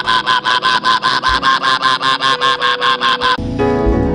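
A man rapidly repeating one syllable ("ba ba ba") into a microphone, about seven a second at an even pitch: speaking in tongues during prayer, over a sustained keyboard note. The rapid syllables stop shortly before the end, leaving the held note sounding.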